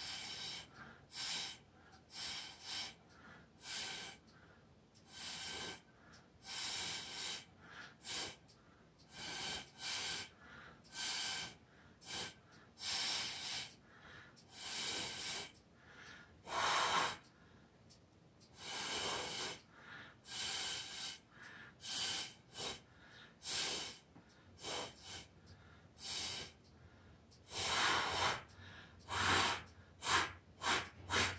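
A person blowing short puffs of air over and over, about one a second, with a few longer blows, to push wet acrylic paint across a canvas.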